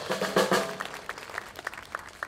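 Youth big band sounding a short chord with drum-kit hits about half a second in, ringing out into scattered audience applause.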